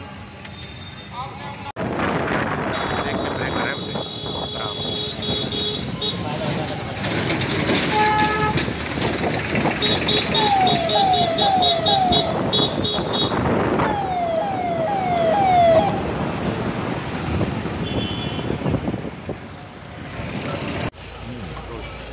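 Vehicle engines and street noise with background voices as police vehicles move off, and a police siren giving two runs of four short falling whoops around the middle.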